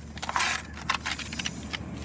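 A sheet of paper being turned over and handled by hand, rustling, with a louder rustle about half a second in and several short crackles.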